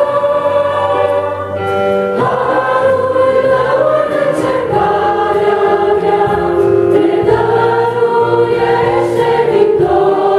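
A small mostly female vocal group singing a Romanian Christian hymn in harmony, with held chords that change every second or two, over electronic keyboard accompaniment.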